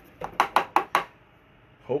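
A quick run of five or six light clicks and knocks, tea ware being handled.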